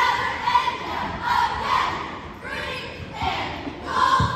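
Cheerleading squad shouting a cheer in unison, a rhythmic chant of short yelled phrases.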